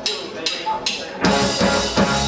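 Punk rock band starting a song live: two sharp count-in hits from the drummer about half a second apart, then the whole band, guitar, bass and drum kit, comes in loud just over a second in.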